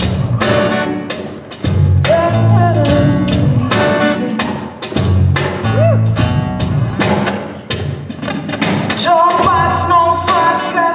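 Live acoustic band: a woman singing in phrases into a microphone over a strummed acoustic guitar and a bass guitar, with a steady beat. Her longest sung phrase comes near the end.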